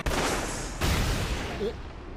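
Explosive blast sound effects from an anime battle scene: a sudden burst of noise at the start that dies away, then a second blast with a deep rumble about a second in, fading out.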